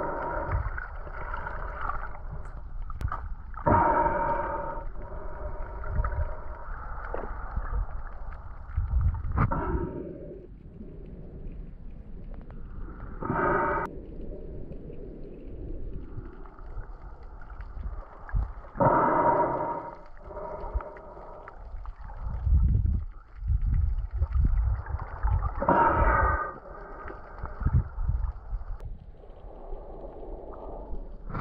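Muffled underwater sound from a snorkeler's camera held below the surface: low sloshing and rumbling water. A hollow, resonant rush comes every few seconds, the snorkeler's breaths through the snorkel tube.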